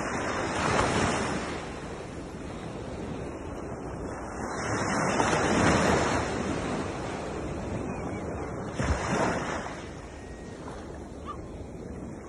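Small sea waves breaking and washing up a sandy beach: three surges of surf, roughly four seconds apart, over a steady hiss of water.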